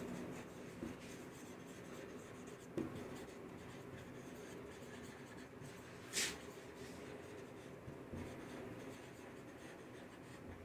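Marker pen writing on a whiteboard: faint, scratchy strokes and small ticks as a sentence is written out, with one brief louder hiss about six seconds in.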